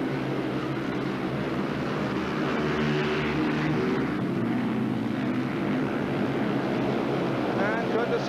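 Several speedway bikes racing flat out, their single-cylinder engines making a steady, dense drone of layered tones with a noisy haze on top.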